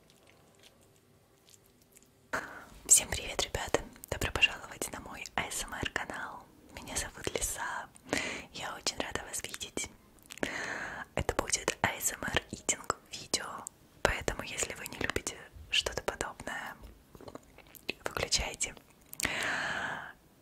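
A woman whispering, starting about two seconds in after near silence.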